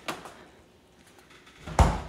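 A light click, then a refrigerator door shutting with a deep thud near the end.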